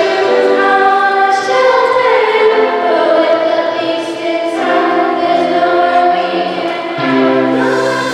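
Young girls singing together into microphones, holding long notes, over a children's rock band accompaniment.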